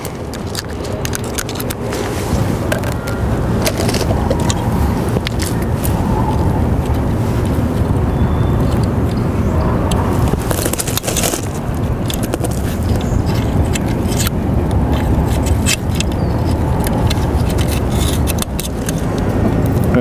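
A steady low rumble throughout, with frequent clicks and scrapes as the switch machine's electric motor is handled and shifted in its metal housing.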